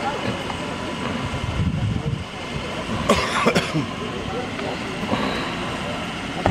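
Low, indistinct voices over a steady outdoor background, with a short noisy burst about three seconds in.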